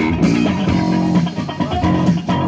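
A live pop band playing, with electric guitar and bass guitar prominent.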